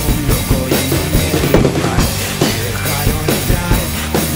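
Acoustic drum kit played with a steady beat of drum and cymbal hits over the song's band recording, with no vocals in this stretch.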